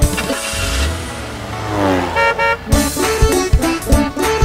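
Sound effects over a children's song: a whooshing sweep that glides down in pitch, then two short toots of a cartoon bus horn a little past halfway, after which the backing music starts again.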